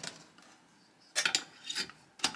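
A folding stainless-steel steamer basket clinks and rattles as it is handled and set into a saucepan. There is a quick cluster of metal clicks a little after a second in, then another short rattle near the end.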